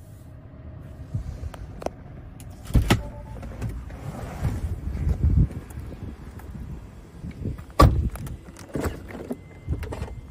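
Doors of a Tesla Model 3 being opened and shut, with handling noise in between. Two heavy thuds, one about three seconds in and a louder one near eight seconds.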